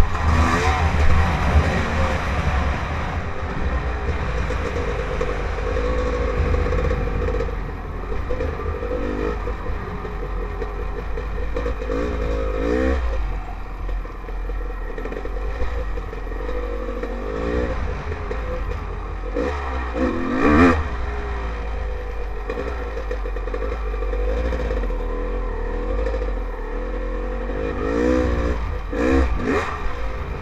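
Dirt bike engine running under way, its pitch swinging up and down several times as the throttle is opened and closed, with one sharp rev standing out over a constant low rumble.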